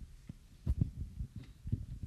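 Handling noise from a handheld microphone being passed from one person to another: a few dull low thumps, the loudest about two-thirds of a second in and another near the end.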